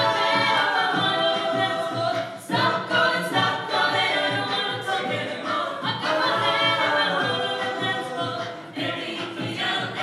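Mixed show choir singing in close harmony, sustained chords that rise in pitch near the start and again about six seconds in, with a brief dip about two and a half seconds in.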